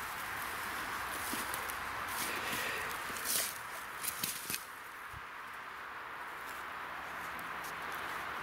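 Footsteps through dry grass and pine-needle litter, with steady rustling and a few sharper crunches or snaps around the middle.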